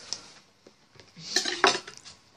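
Tableware clinking and knocking as things are handled at the table during a meal, with a louder cluster of knocks about a second and a half in.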